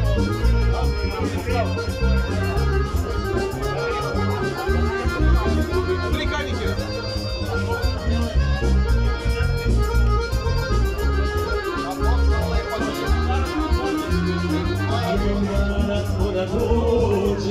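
Accordion-led folk music playing loud over a steady, pulsing bass beat: an instrumental stretch with no singing.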